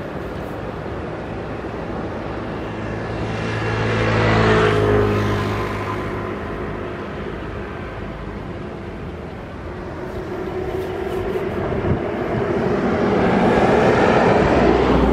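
A motor vehicle passing close by, its engine and tyre noise building to a peak about four and a half seconds in and falling in pitch as it fades away, then another vehicle approaching and growing louder near the end.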